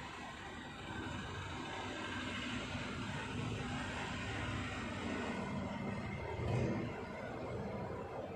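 Whiteboard marker scribbling back and forth on a whiteboard as a rod in a diagram is shaded in, over a low rumbling background, swelling briefly about six and a half seconds in.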